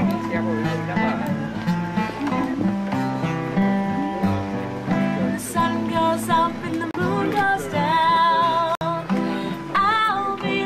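A woman singing to her own acoustic guitar, strumming and picking chords. Her voice is strongest in the second half, on long held notes with a wavering vibrato.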